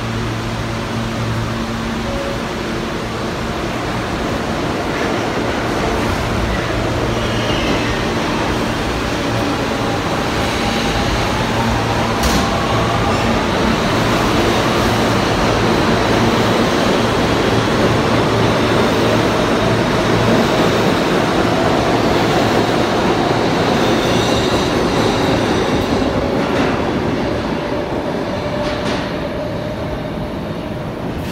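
An R160B subway train with Siemens propulsion pulling out of the station. It hums steadily while standing, then its motors whine, rising in pitch as it gathers speed. Wheel and rail noise builds to a peak about two-thirds of the way through and fades as the train leaves.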